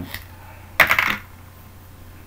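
A short clatter of small hard clicks, about a second in, as a whiteboard marker is picked up and handled.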